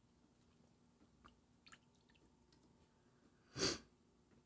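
A person sniffing once, short and sharp, near the end, after a few faint small clicks.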